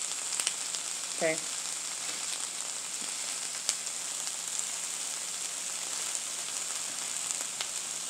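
Mayonnaise-spread bread and sliced turkey frying on a hot griddle: a steady sizzle with a few light ticks and pops scattered through it.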